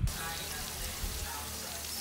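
Shrimp sizzling in a pan of bubbling butter and cream sauce as a spatula stirs them, a steady hiss that starts suddenly.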